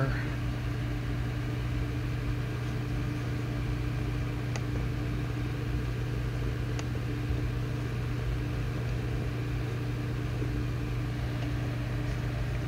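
A steady low machine hum, like a fan or appliance running, with two faint clicks about two seconds apart near the middle.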